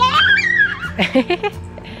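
A small child's high-pitched squealing shout, "ya!", followed about a second in by a short run of giggles, "hehehe", over background music.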